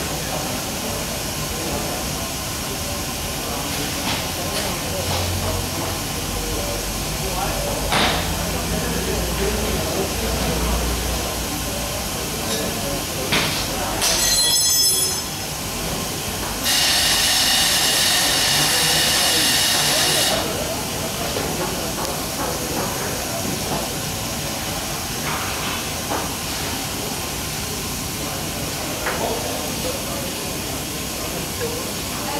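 Steady background hiss. About seventeen seconds in comes a loud hissing rush lasting about four seconds, as liquid jets from a three-phase separator's sample valve into a funnel and sample bottle. Just before it there is a brief high squeal.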